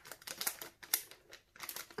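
A clear plastic bag of holographic flakes being handled by gloved hands: a run of irregular crinkles and light ticks.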